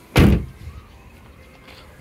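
A 2009 Nissan Cube's side-hinged rear door being shut: a single solid slam just after the start, dying away within about half a second.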